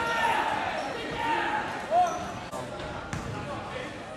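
A basketball bouncing on a hardwood gym floor a few times in the latter half, over crowd voices echoing in the gym.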